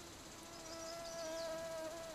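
A mosquito whining close by: a steady, thin hum that grows a little louder about half a second in.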